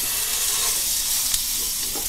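Double-cut pork chop sizzling steadily as it is pressed into a hot frying pan to sear.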